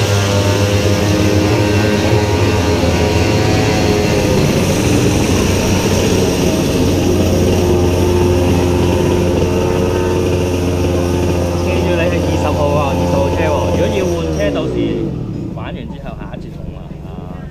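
Kart engine idling steadily, then slowing and dying away near the end.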